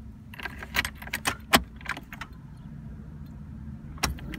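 Car keys jangling and clicking in the ignition of a 1984 Dodge Daytona Turbo Z as the key is turned to the on position: a quick run of clicks and rattles in the first two seconds, then quiet.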